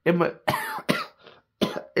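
A man speaking haltingly in short broken fragments with pauses between them.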